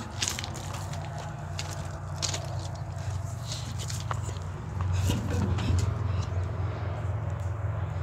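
Footsteps and scuffs crunching on railway ballast stones as someone crawls under a stopped freight car, with irregular clicks and scrapes over a steady low hum.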